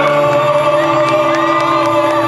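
A man singing a long held note into a microphone over live instrumental accompaniment.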